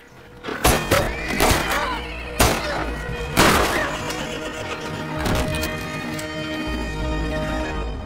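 Dramatic film score with a run of heavy thuds and crashes over the first five seconds or so, then a sustained music chord held through the rest.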